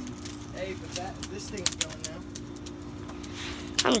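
Campfire crackling, with sharp irregular pops that sound like popcorn, under faint background voices.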